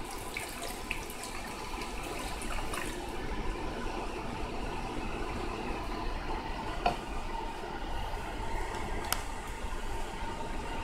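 Diluted photoresist developer solution being poured from a plastic measuring jug into a plastic tub, a steady splashing pour, with two light clicks later on.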